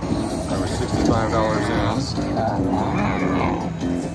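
Mo' Mummy video slot machine playing its game audio: music with a drawn-out, voice-like sound effect that rises and falls several times as the Cash Collect bonus feature triggers.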